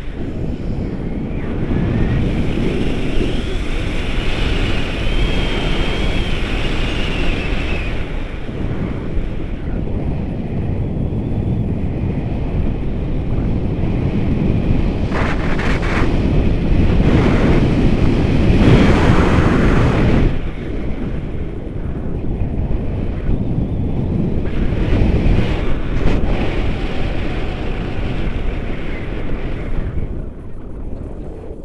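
Wind buffeting an action camera's microphone in tandem paraglider flight: a loud, uneven rumble that swells and dips, easing briefly about a third of the way in and again about two-thirds through.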